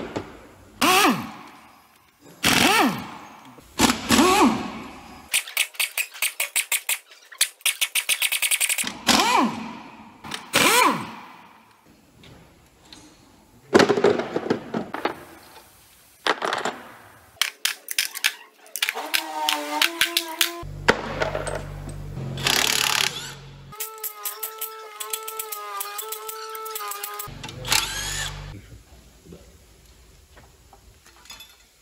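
Steel engine parts clanking and clinking as the rocker-arm assemblies are lifted off a MAN D2066 diesel's cylinder head and set into the valve cover. In between, several short bursts of a cordless impact wrench rattling the head's bolts loose, with a motor whine under the hammering in the later bursts.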